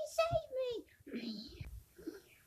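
A child's voice crying out in character, pitch falling, followed by a breathy whispered sound.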